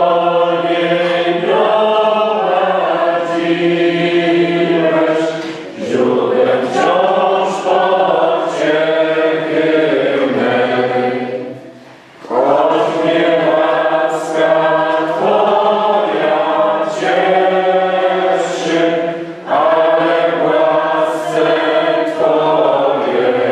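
A choir singing in long phrases, with brief breaks between them and a clear pause about twelve seconds in.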